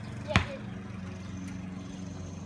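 A basketball bounces once on a concrete driveway, a single sharp thud about a third of a second in, over a steady low hum.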